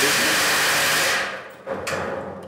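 A loud steady rushing hiss that fades out after about a second and a half, then a second short burst of the same hiss near the end.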